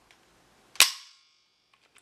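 AR-15 hammer released by the trigger and snapping forward against the stripped lower receiver: one sharp metallic snap about a second in, with a brief ring.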